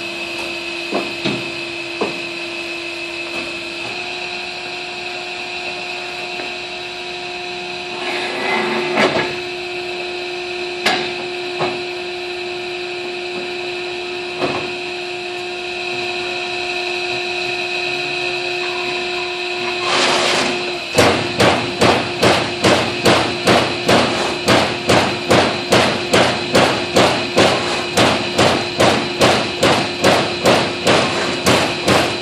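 Euromac CNC turret punch press: a steady machine hum with a few knocks as the steel sheet is set in the clamps, then, from about two-thirds of the way in, the punch striking the sheet in a steady rhythm of about two hits a second.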